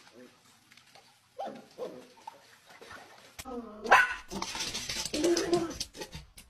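Puppy whimpering and yelping in short cries, with a loud cry about four seconds in followed by a noisy, crackling stretch of about a second and a half.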